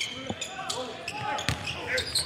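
Live basketball game sound on a hardwood court: a basketball bouncing a few times, with short squeaks and background voices in the arena.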